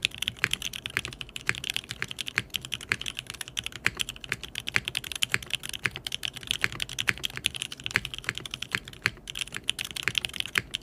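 Fast touch-typing on a custom Minerva mechanical keyboard with Lavender linear switches, a carbon fiber plate and GMK keycaps: a steady, rapid stream of keystrokes, many a second, as in a 116-words-a-minute typing test.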